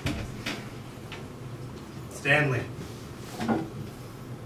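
A few light knocks on the stage floor, then a man's short groans of effort, about two seconds in and again near the end.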